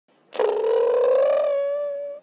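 A single long, high, voice-like call with a clear pitch that rises slightly. It starts about a third of a second in and fades near the end.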